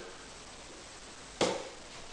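Quiet room tone, then a single sharp knock about a second and a half in that dies away quickly.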